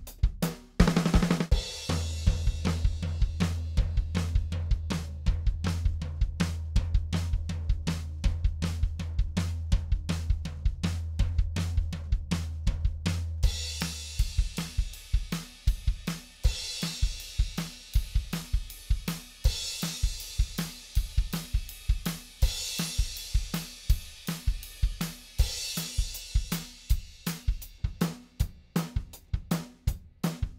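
A recorded drum kit groove played through the PreSonus ADL 700's equalizer as its bands are pushed to extremes. For the first half a heavy low-end boost puts a sustained low hum under the kick and snare. About halfway the low end drops away, and a bright treble boost on the cymbals swells and fades several times.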